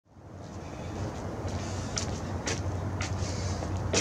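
Steady outdoor background rumble that fades in at the start, with a few faint clicks about two to three seconds in.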